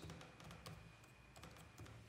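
Laptop keyboard typing: a quick run of faint key clicks as a short word is typed.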